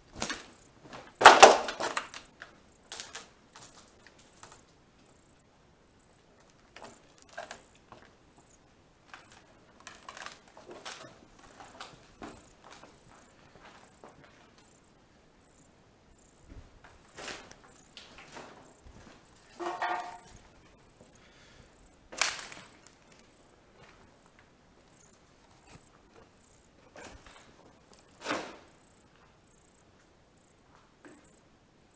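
Footsteps and scattered knocks and scuffs on rubble and debris underfoot, the loudest about a second in, with a few more spread through; one short pitched creak-like sound comes about twenty seconds in. A faint, steady high-pitched whine runs underneath.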